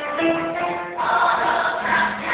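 A chorus of women singing a musical-theatre number together, holding notes, with a new, louder phrase starting about a second in.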